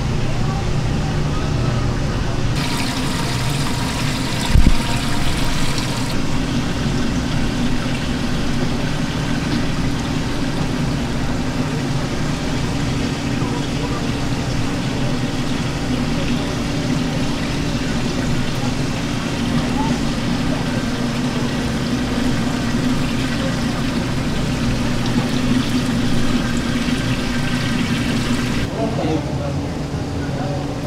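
Steady low hum and running, trickling water from live seafood tanks' pumps and aeration, under indistinct voices; a single thump about four and a half seconds in.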